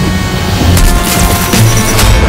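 Film-trailer sound design: a loud, dense noisy swell with a deep low rumble under it, laid over music with a few held tones.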